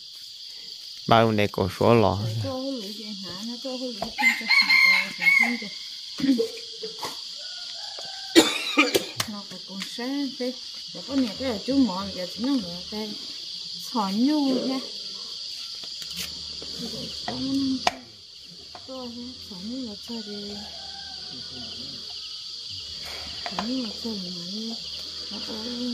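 Chickens in the yard, with a rooster crowing and hens clucking, over a steady high-pitched chorus of insects, and a woman's voice talking on and off.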